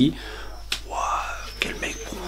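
A man whispering under his breath, with a few light clicks about a third of the way in and again near the end.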